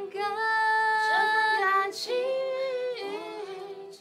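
A young woman singing a Mandarin pop song in long held notes with short slides between them, accompanied by two acoustic guitars.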